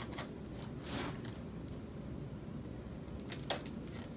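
Punch needle pushed through a flat-woven seagrass basket a few times, each punch a short, soft rustle, irregularly spaced.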